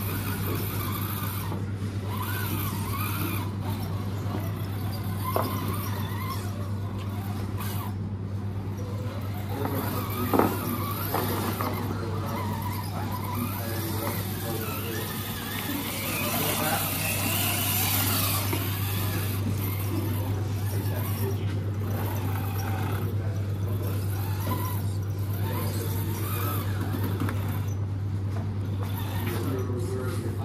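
A radio-controlled rock crawler's electric motor and geared drivetrain whining as it climbs rocks and ramps, the whine rising and falling with the throttle. There is a sharp knock about ten seconds in.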